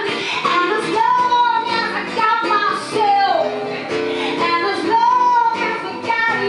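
A woman singing live into a microphone, holding long notes that bend and slide, one falling away about three seconds in, over guitar accompaniment through the stage PA.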